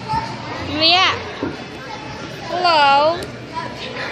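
A young child's voice making two wordless, drawn-out sounds over the background noise of a busy play area: a quick rising-and-falling squeal about a second in, then a longer call with a wavering pitch near three seconds.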